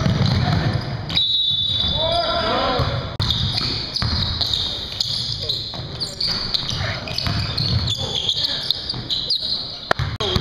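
A basketball bouncing on a hardwood gym floor during full-court play, with players' voices calling out, all echoing in a large gym.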